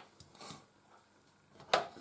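A single sharp clink of a metal spoon against a ceramic plate as a slice of apple crumble is set down on it, after a faint soft rustle.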